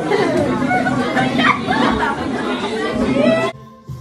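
Several people talking over one another, with music faintly underneath; it cuts off suddenly about three and a half seconds in.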